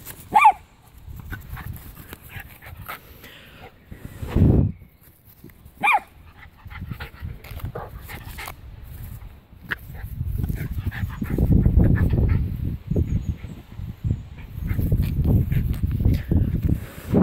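Small terrier giving two short, high yips about five and a half seconds apart, the excited yips of a dog at play. Stretches of low rumbling noise come and go in between, loudest in the later half.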